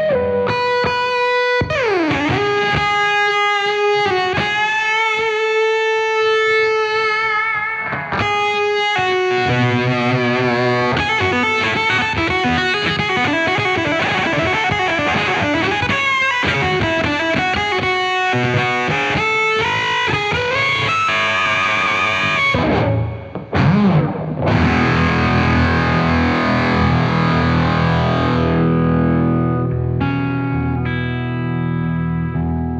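Electric guitar played through a fuzz pedal, a clone of the Prescription Electronics Experience Fuzz, with sustained lead notes, string bends and wide vibrato. There is a deep dip in pitch and back about two seconds in, a brief break about two-thirds of the way through, and fuller chords after it.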